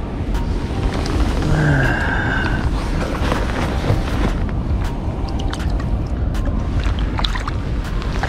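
Wind rumbling on the microphone over the wash of a shallow river, with scattered small clicks and splashes as a walleye is handled and let go in the water. A brief whistle-like tone sounds about two seconds in.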